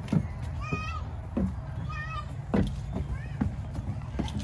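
Children's high-pitched squeals and calls, three short rising-and-falling cries about a second apart, with a few knocks and footsteps on a wooden play structure's deck and rails.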